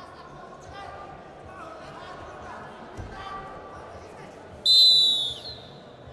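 A referee's whistle, blown once near the end as a single loud, shrill blast of just under a second, stopping the wrestling bout. Before it, indistinct voices echo in a large hall, with a dull thud about halfway through.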